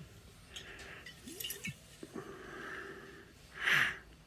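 A man breathing close to the microphone, with a few light handling clicks from the glass soda bottle, and a loud short breath through the nose near the end.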